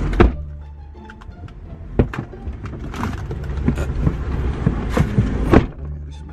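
Car door opening and shutting, several sharp thumps and knocks as a man climbs into the front passenger seat, the loudest near the start and shortly before the end. Background music runs underneath.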